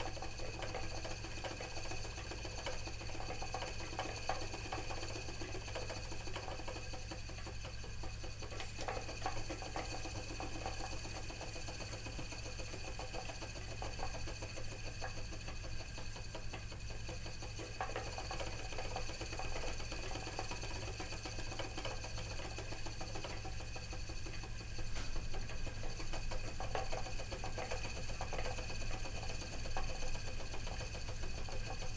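Wooden treadle spinning wheel running steadily while plying yarn: the flyer and bobbin whirring and the treadle and drive mechanism working, a little louder near the end.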